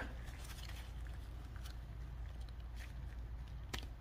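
Faint clicks and rustle of a hand wire stripper closing on 18-gauge wire and pulling the insulation off, with gloved hands handling it; one sharper click near the end, over a low steady hum.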